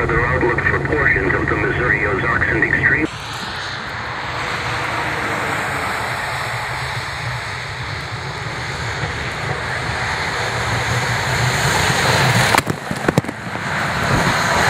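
Snowplow truck approaching along the slushy interstate, the rush of its blade and the snow and slush it throws growing steadily louder. About twelve and a half seconds in, a wave of brine and road slush hits the camera with a sudden splatter.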